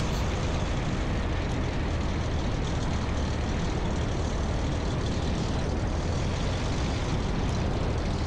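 1952 Cessna 170B's six-cylinder Continental engine idling steadily as the taildragger rolls out on the runway, mixed with an even rush of wind and rolling noise at the wing-mounted microphone.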